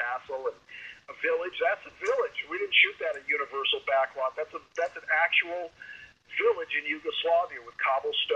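Speech only: a person talking continuously, with a short pause about six seconds in.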